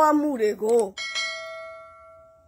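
A single bright bell chime about a second in, ringing on and fading away over a second and a half: the notification-bell sound effect of a subscribe-button animation. A woman's speech comes just before it.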